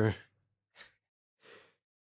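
Two faint, short breath sounds from a man close to a studio microphone in a pause between sentences, the second a soft intake of breath about a second and a half in.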